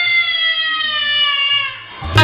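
A toddler crying: one long wail that slowly falls in pitch and fades out near the end.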